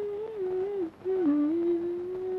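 A woman humming a wordless tune in short melodic phrases, with a brief break about a second in, then settling into a long held note.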